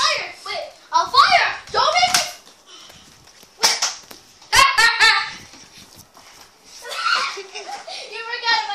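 Children's voices shouting in high pitch without clear words, in several bursts, with a few sharp knocks near the middle.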